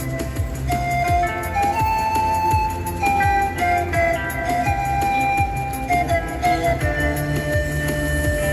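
Panpipes playing a slow melody of held notes stepping up and down, ending on a long held note, over a recorded backing track with a low steady accompaniment from a portable loudspeaker.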